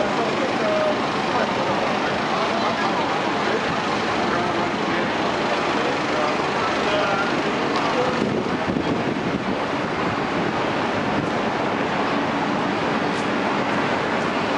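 Busy city street ambience: steady traffic noise with passers-by talking indistinctly.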